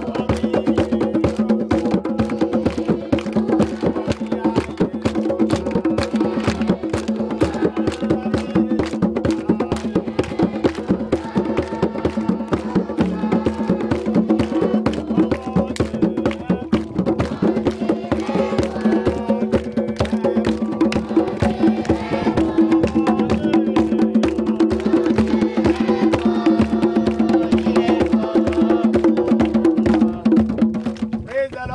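Rope-tuned, goblet-shaped hand drums with skin heads, struck by hand in a fast, dense rhythm, over a steady pitched sound that is probably voices singing along.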